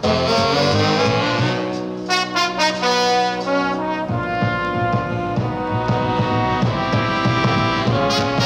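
A 1940s swing big band's brass section playing held chords in an instrumental passage. The harmony changes about four seconds in, when the low held notes stop and a livelier rhythmic backing comes in. The sound is band-limited, like an old record.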